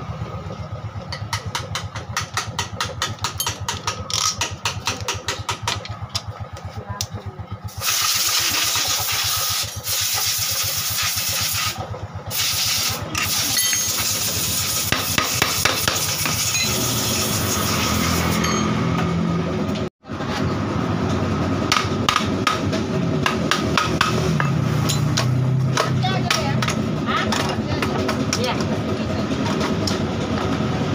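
Hand socket ratchet clicking rapidly and evenly as the bolts of a Honda Beat FI scooter's CVT cover are undone. Then comes a steady hiss lasting about ten seconds, and after it more irregular clicking and knocking as the cover comes loose.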